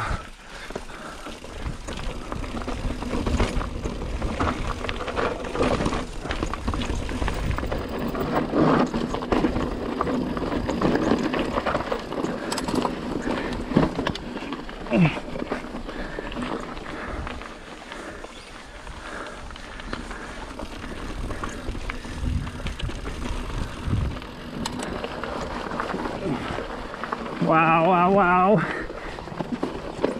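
Pivot Trail 429 mountain bike rolling over rocky dirt singletrack: continuous tyre noise and wind with frequent knocks and rattles as the bike hits rocks. A short held voice call comes near the end.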